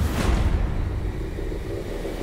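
Film soundtrack sound effect: a sharp swell at the start that settles into a deep, steady rumble.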